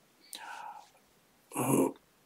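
A man's voice in a pause of talk: a soft breath in, then a brief hesitant "uh" near the end.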